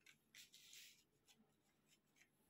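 Near silence, with a faint, brief rustle about half a second in as a hand moves over playing cards laid on a cloth.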